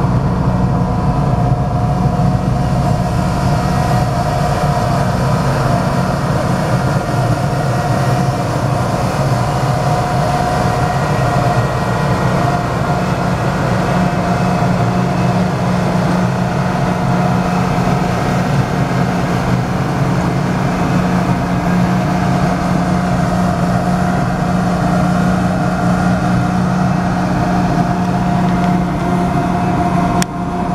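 Historic passenger train cars rolling slowly past at close range: a steady, even rumble and hum with a thin steady tone above it and no sharp knocks.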